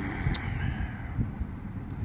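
Steady low outdoor rumble with no clear single source, and a brief sharp click about a third of a second in.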